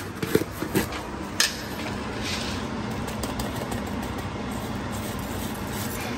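A few light clicks in the first second and a half as the screw lid of a plastic tub of crispy onions is twisted open, over a steady low mechanical hum like a fan.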